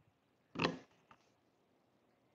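A woman's single brief chuckle about half a second in; the rest is faint room tone.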